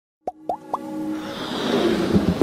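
Animated-intro sound effects: three quick rising bloop pops about a quarter second apart, then a swelling build-up of sustained tones and hiss that grows steadily louder.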